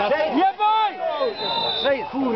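Several men's voices shouting and calling out over one another: excited reaction to a goal.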